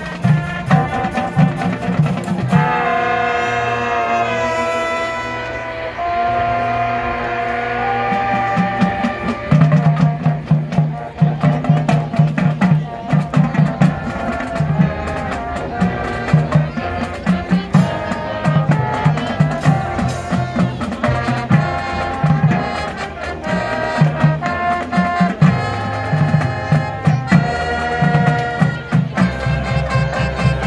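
Marching band playing: brass sustaining chords over drums, then moving into a driving rhythmic passage with repeated low brass notes and drum hits from about ten seconds in.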